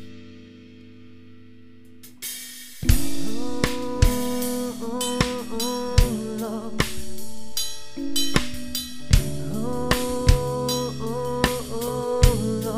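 Acoustic drum kit played along to a pop-rock song. The opening seconds hold only a quiet, fading held chord. About three seconds in, a loud hit brings the full band back, with snare, kick and cymbal strokes over sustained instrument tones.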